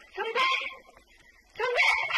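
A dog whimpering: two short, pitched cries about a second apart.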